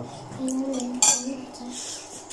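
Metal cutlery against a ceramic bowl, with one sharp clink about a second in.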